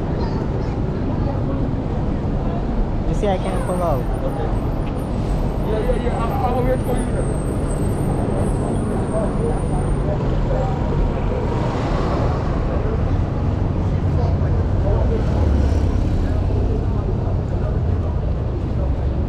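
Busy city street ambience: a steady low rumble of traffic, with passersby's voices heard now and then.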